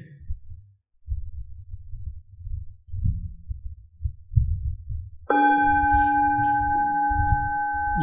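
Low rumbling thumps for about five seconds, then a singing bowl struck once, its several overtones ringing on steadily to mark the start of the meditation sitting.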